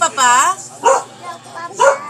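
Three short, high-pitched wordless vocal calls: the first rises and falls over about a third of a second, the next two are brief, about one and two seconds in.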